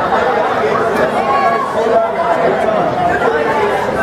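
Loud chatter of many voices talking over one another, with no music playing.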